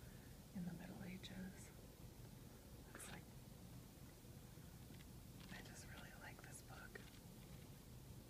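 Very quiet whispering with the soft rustle of a paperback's pages being leafed through, one brief papery flick about three seconds in.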